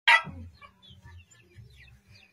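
Birds calling: one short, loud call right at the start, then faint scattered chirps over a low rumble.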